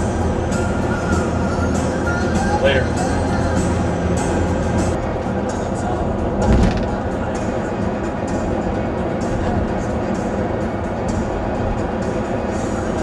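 Music with singing and a steady beat playing on a car stereo, heard inside the moving car over its road and engine noise.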